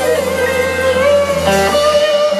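Live band playing soul music, with one long note held and wavering slightly over guitar and the rest of the band.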